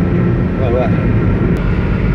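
Steady low rumble of engine and tyre noise inside the cabin of a car cruising on a concrete toll road, with a brief voice a little before the middle.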